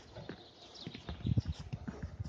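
Footsteps on a roof under construction: a few irregular dull thumps and knocks, the loudest about halfway through, as someone walks across the underlayment membrane and wooden battens.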